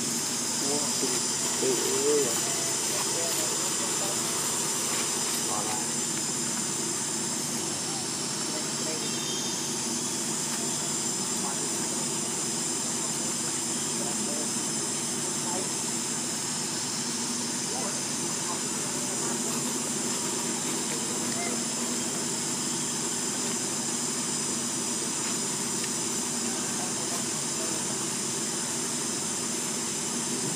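Steady outdoor forest ambience: a continuous high-pitched insect drone with a low steady murmur beneath it, and a faint brief wavering call near the start.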